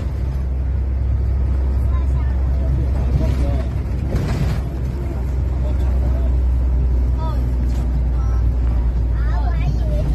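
Hong Kong green minibus running on the road, heard from inside the cabin: a steady low engine and road rumble, with faint voices of other people. A brief rush of noise comes about four seconds in.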